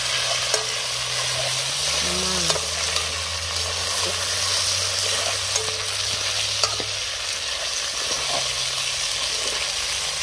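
Pieces of goat meat frying in hot oil in a pot for curry goat, with a steady sizzle, stirred with a spoon that clicks against the pot now and then.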